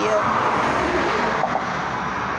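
Road traffic: a steady rush of passing vehicles' tyre and engine noise.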